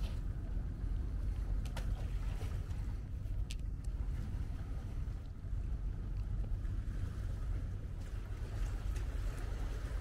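Wind buffeting the microphone: a continuous low, gusting rumble, with a couple of faint brief clicks early on.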